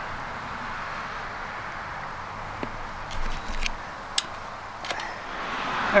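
Steady outdoor background noise, with a brief low rumble a little past halfway and a few faint sharp clicks in the second half.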